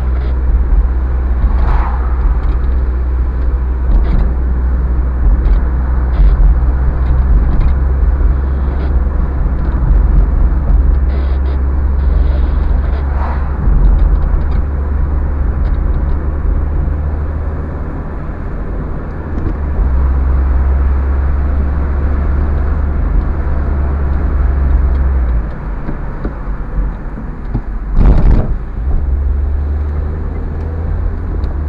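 Car driving along a town street, heard from inside the cabin: a steady low rumble of engine and road noise. A short, sharp thump stands out near the end.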